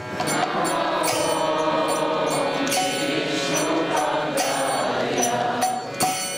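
Devotional kirtan: voices chanting a mantra in long held notes, with light percussion.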